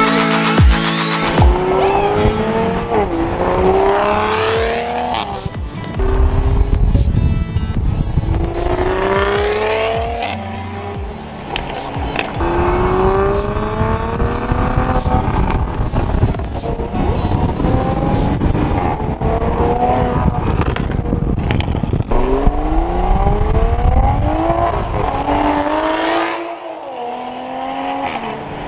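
2020 Toyota Supra's 3.0-litre turbocharged straight-six through a Fi Exhaust valved system, accelerating hard in several pulls: each a rising engine note that drops back at a gear change. Background music plays at the start and stays under the engine.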